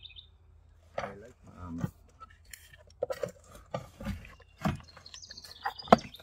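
Hands shifting a battery and its plastic battery box on the trailer tongue's metal tray: a string of sharp knocks and clicks through the second half. A bird chirps at the start and again near the end.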